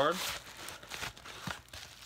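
Crinkling and rustling of card packaging being handled, fading after about a second, with one sharp tap about one and a half seconds in.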